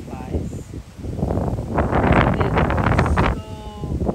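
Wind buffeting the microphone and rustling through flowering cilantro, loudest in the middle. Near the end a brief steady hum is heard.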